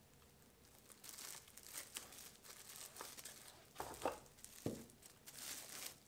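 Plastic shrink-wrap film crinkling and tearing as it is pulled away from a shrink-wrap sealer bar after sealing, starting about a second in, with a few sharp knocks about four seconds in.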